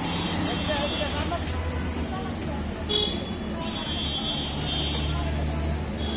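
Busy street ambience: a steady low traffic rumble with voices in the background, and a short clink about three seconds in.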